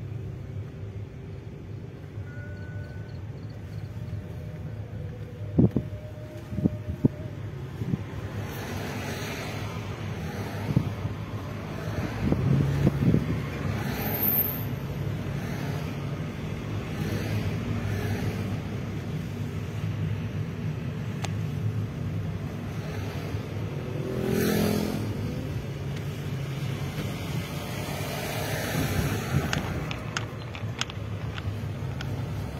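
Steady engine and road noise heard from inside a moving car, with other vehicles swelling past twice. A few sharp knocks about six seconds in.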